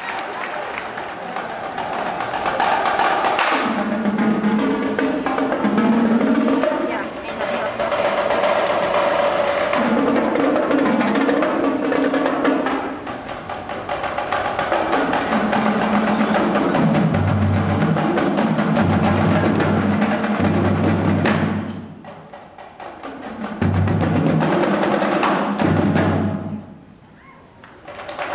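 A high school marching drumline playing: snare drums, tenor drums and bass drums in rapid, dense patterns. The bass drums step through notes of different pitches. The playing thins out briefly about 22 seconds in, then the full line comes back in.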